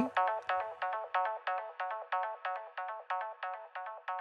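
Software synthesizer in Ableton Live playing a quick repeating run of short pitched notes, about five or six a second, each dying away fast. Two copies of the same signal are summed, giving a little digital clipping distortion.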